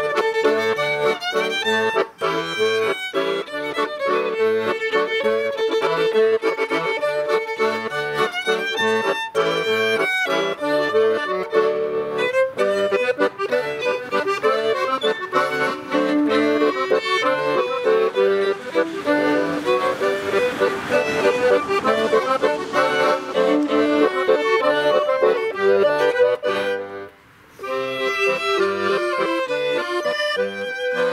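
Violin and accordion playing a traditional Swiss folk dance tune together, with the accordion carrying most of the sound. The music breaks off for a moment about three seconds before the end, then carries on.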